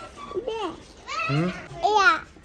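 A small child's voice making three short, high-pitched wordless vocal sounds, like babble.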